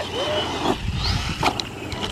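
Losi Lasernut RC rock racer's brushless electric motor whining up with throttle over the sound of its tyres on loose dirt, with a sharp knock about one and a half seconds in.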